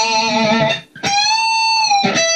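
Clean electric guitar (no distortion or pitch-shift effect) playing a high note on the 20th fret of the B string, bent up a whole step and held, then picked again about a second in, bent up and held once more.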